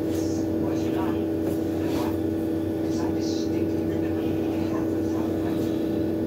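A steady motor hum holding one constant tone, with a few faint light taps.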